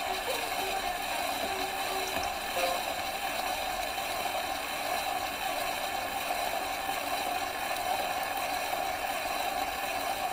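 Surface noise of a shellac 78 rpm record turning on a gramophone: a steady hiss, with a few faint short tones in the first few seconds and no clear music after that.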